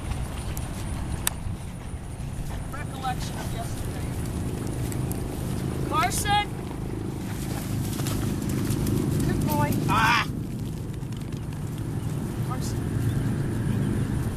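Steady low rumble of wind on the microphone, with three short rising high-pitched calls about three, six and ten seconds in.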